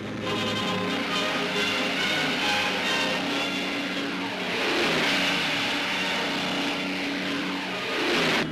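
Engines of a twin-engine Vickers Wellington bomber droning as it takes off and passes low overhead, swelling to their loudest a little past halfway, with music beneath.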